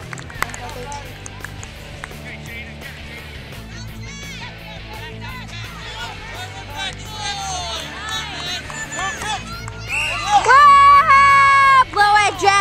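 Spectators' voices and scattered calls at a youth soccer game, rising near the end into a loud, long held shout as a shot goes toward the goal.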